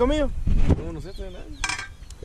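Stemmed champagne flutes tapped together in a toast: one brief clink near the end, after some talk.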